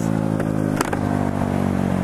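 Honda Ruckus scooter's small single-cylinder four-stroke engine running at steady revs, with one short click about halfway through.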